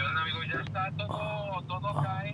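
Inside a car's cabin with the engine running: a steady low hum under soft, indistinct talking.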